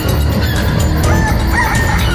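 Film score music with chickens clucking and squawking over it, the squawks coming thicker in the second second.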